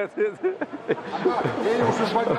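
Men talking, with some laughter.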